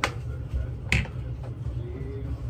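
Two sharp plastic clicks about a second apart: the cap of a small toiletry bottle being snapped. A steady low hum runs underneath.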